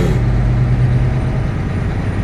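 Heavy truck's diesel engine heard from inside the cab, a steady low drone as the truck pulls away at low speed.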